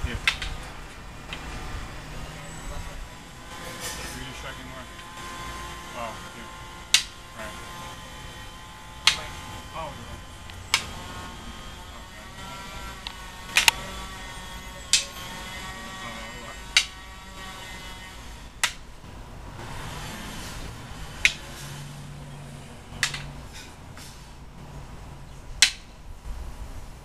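Eskrima sticks clacking together in a slow partner striking-and-blocking drill: about a dozen sharp single knocks, irregularly spaced a second or two apart, each one a strike meeting a block.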